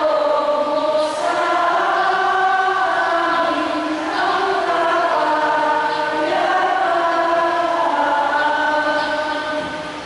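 Choir singing a slow liturgical chant in long held notes, each changing every second or two. The singing tails off near the end.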